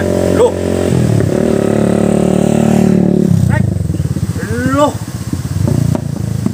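A motorcycle engine running steadily, its note shifting about a second in, then cutting off abruptly a little past three seconds.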